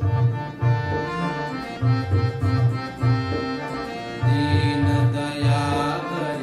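Harmonium playing a devotional melody in held, reedy notes that step from one to the next, over a rhythmic drum accompaniment.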